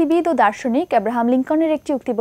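Only speech: a woman talking in Bengali.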